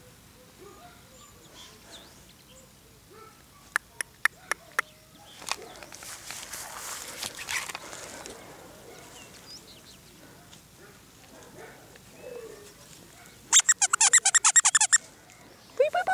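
Outdoor ambience with faint scattered bird chirps. A few sharp clicks come about four seconds in, and near the end there is a loud rapid chattering rattle of about ten pulses a second, lasting about a second and a half.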